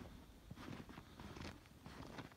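Faint footsteps crunching in fresh snow, a few uneven steps.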